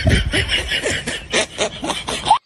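Laughter: a run of short, quick chuckling laughs.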